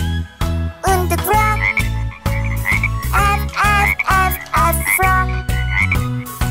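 Cartoon frog croaking sound effects, a series of short repeated croaks, over the backing of a children's song with a steady bass beat.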